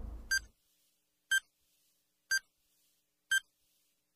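Countdown timer on an improvised bomb beeping: four short, identical high beeps, one each second, counting down to detonation.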